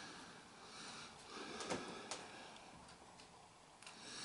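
Faint indoor room sound with soft breathing close to the microphone and two or three small clicks about halfway through.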